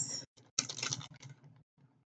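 Paper being handled and rustling in two short bursts, the second starting about half a second in and lasting under a second.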